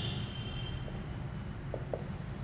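Felt-tip marker writing on a whiteboard: a few faint, short strokes over a low steady room hum.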